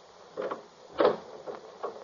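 Car door being opened and shut as a radio-drama sound effect: a few short clunks and knocks, the sharpest about a second in.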